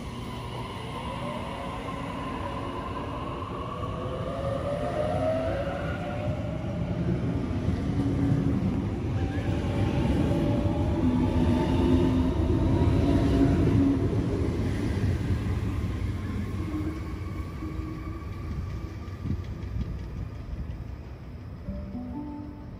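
Sydney Trains double-deck electric suburban train pulling out of the platform. Its traction motors give a rising whine as it accelerates, and the running noise of the carriages builds to a peak as they pass, then fades as the train leaves.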